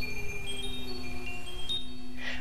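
High chime tones in the background music, ringing out one after another over a low, steady drone.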